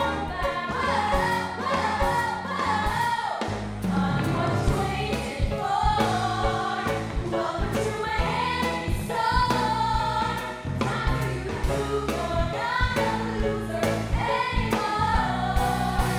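Three women singing a musical-theatre song together live, over instrumental accompaniment with a steady beat.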